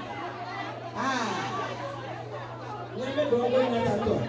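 Women's voices chattering and calling out in a hall, two short stretches of talk with a steady low hum underneath.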